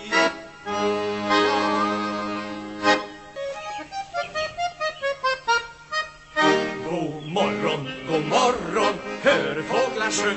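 Chromatic button accordion playing an instrumental break: a held chord for about two seconds, then a quick run of short single notes, then fuller, busier playing over the last few seconds.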